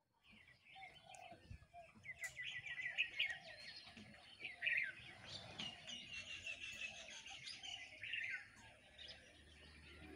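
Faint birdsong: many short high chirps and quick trilled runs, with softer lower calls underneath. It builds up about two seconds in and thins out near the end.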